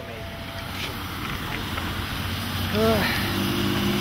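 Heavy rain pouring down, with wind buffeting the microphone, the noise slowly growing louder.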